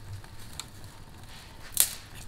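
Dry twigs and branches being snapped by hand to feed a stove fire: faint clicks and rustling, then one sharp crack near the end.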